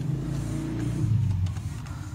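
Low engine rumble, like a motor vehicle, swelling about a second in and then easing off, with a few faint keyboard key presses.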